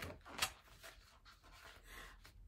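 Picture-book page being turned: a paper rustle with one sharp flick of the page about half a second in, then a few faint rustles.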